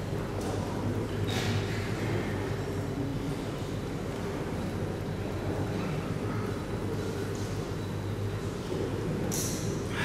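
Sports hall room tone: a steady low hum with faint background murmur, and a brief hiss about nine seconds in.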